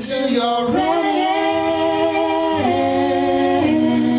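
Male and female voices singing long held notes in harmony, with little instrument underneath; the chord steps to new pitches three times.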